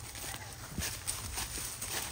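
Irregular steps crunching on dry palm leaves, straw and dirt.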